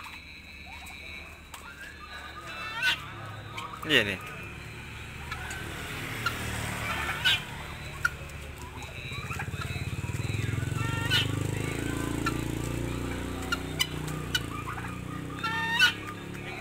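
Helmeted guineafowl and a domestic turkey calling in their pen: a handful of short, harsh calls a few seconds apart. A low rumble builds in the background about halfway through.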